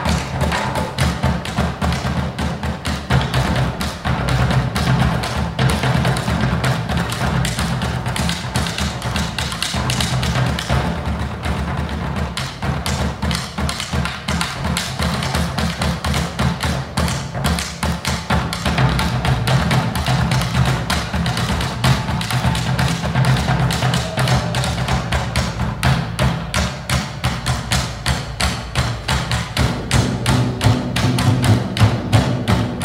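Live drum ensemble: several large double-headed drums struck with sticks in a fast, dense rhythm of low booming strokes and sharper taps.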